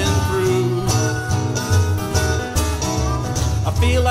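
Live acoustic band playing an instrumental passage between sung lines: harmonica over strummed acoustic guitars and an upright bass, with a country/bluegrass feel.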